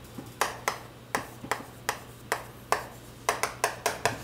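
Chalk tapping and scraping on a chalkboard while a formula is written: an irregular run of about a dozen short, sharp taps, coming faster near the end.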